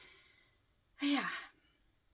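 A woman sighing once, about a second in: a short breathy exhale whose voice drops in pitch.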